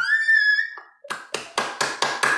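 A man's high-pitched excited squeal for most of a second, then quick hand clapping, about five claps a second, near the end.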